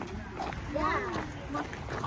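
A voice talking softly, quieter than the nearby talk, with faint background noise.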